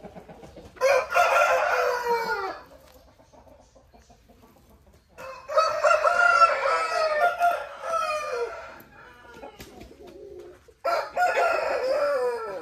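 Aseel roosters crowing three times, each crow a few seconds long and trailing off in a falling note, the middle one the longest.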